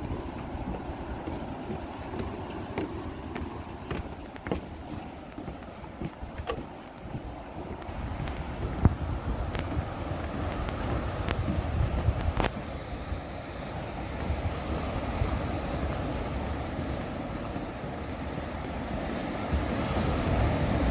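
Sea wind buffeting the microphone, growing stronger in the second half, over the steady wash of surf breaking on a rocky shore. A few sharp knocks come in the first half.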